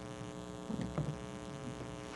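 Steady electrical mains hum with a ladder of steady overtones, and a couple of faint soft sounds a little before and at about a second in.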